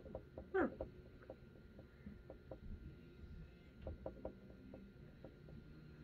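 Faint, scattered small taps and clicks of makeup being handled, a powder brush and powder jar, with a short "huh" from the woman about half a second in.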